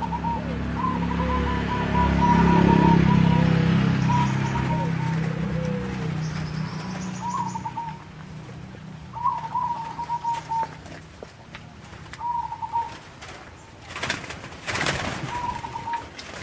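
Zebra doves (perkutut) cooing again and again in their aviaries, short rapid trilled calls recurring every second or two. A low drone runs under the first half and is loudest a few seconds in, and a brief rustling burst comes near the end.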